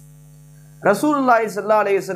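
A steady low electrical mains hum in the recording during a pause, then a man's voice speaking again about a second in.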